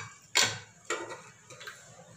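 Raw mutton bones dropped by hand into an empty aluminium pressure cooker, knocking against the pot's base a few times in quick succession. The loudest knock comes about half a second in.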